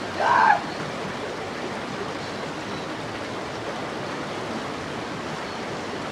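Steady rushing outdoor background noise, with one brief pitched call, like a short voice exclamation, about half a second in.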